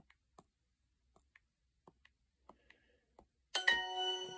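Faint taps of typing on a phone's touchscreen keyboard, then about three and a half seconds in a bright multi-tone chime from the phone: Duolingo's correct-answer sound, ringing on as it fades.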